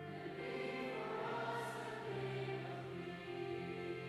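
Mixed high-school choir of boys and girls singing sustained notes in several parts.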